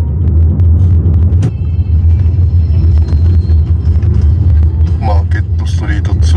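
Steady low rumble of a car in motion, heard from inside the cabin: road and engine noise from a ride-hailing car driving through city streets.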